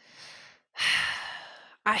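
A woman's audible sigh: one breathy exhale of about a second that trails off, just before she starts to speak.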